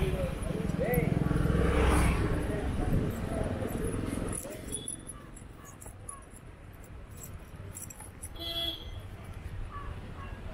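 Roadside street ambience: a motorbike passes close with a low engine rumble for the first few seconds, with people's voices in the background, then the road goes quieter.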